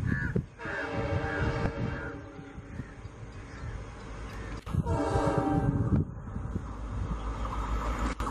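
Train horn sounding two blasts, each a bit over a second long, the first just after the start and the second about five seconds in, over the low rumble of a train running through.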